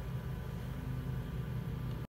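A steady low mechanical hum with no sudden sounds.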